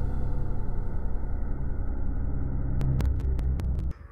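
Snowmobile engine running steadily under load as the sled ploughs through deep powder, with a quick series of sharp clicks near the end before the sound cuts off abruptly.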